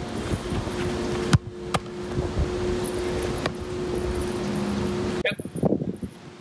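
Outdoor background of wind on the microphone and a steady low hum, broken by one sharp thump about a second and a half in and a fainter knock just after. A man's voice says "yep" near the end.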